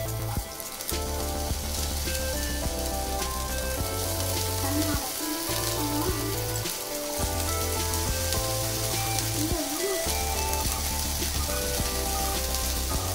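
Diced potato frying in hot oil in a nonstick pan: a steady sizzle with fine crackles as more pieces are dropped in. Background music with a pulsing bass plays over it.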